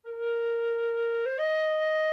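Generation B-flat tin whistle, its head pushed fully in, blown in two steady held notes: a lower note, then a step up about a second and a quarter in to E-flat. The E-flat is a half step under the E it needs, so the whistle still plays flat of a B whistle.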